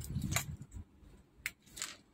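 Small scissors snipping adhesive tape: a few short, crisp snips over faint handling noise.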